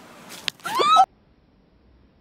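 A sharp click, then a short, loud, high-pitched cry that rises in pitch and cuts off abruptly about a second in.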